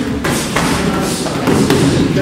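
Boxing gloves landing punches on a target: several short thuds at uneven intervals, over the noise of a busy training hall.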